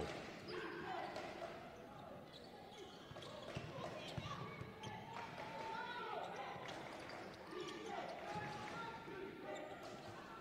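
Faint on-court sound of a basketball game in a large hall: a basketball bouncing on the hardwood floor now and then, with players' distant voices.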